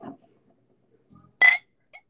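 A single sharp clink with a brief ring about one and a half seconds in: a beer can knocking against a drinking glass as beer is poured.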